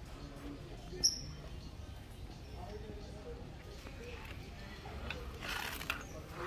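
Shop ambience with faint, indistinct background voices and music, a brief high squeak about a second in, and a short rustle of a plastic sheet-protector portfolio being handled near the end.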